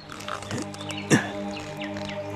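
Background music with held chords that come in about half a second in, and a short sharp sound just past a second in, the loudest moment.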